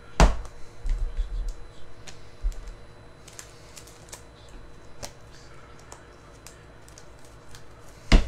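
Keyboard typing: scattered light clicks and taps, with one sharper click just after the start and a couple of soft low thumps in the first few seconds.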